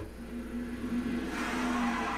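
Soundtrack of a TV drama episode: a steady low drone, with a rushing swell that builds over the second half.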